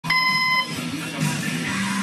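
A short electronic beep, about half a second long, right at the start, followed by rock music with guitar.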